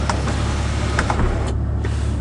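Steady low mechanical hum inside the cabin of a 2005 Honda Odyssey minivan, with a few faint clicks.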